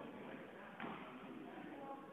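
Faint, indistinct voices of people talking, with a single thump a little under a second in.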